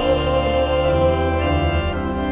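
Church organ playing sustained chords in the entry hymn, moving to a new chord about a second in.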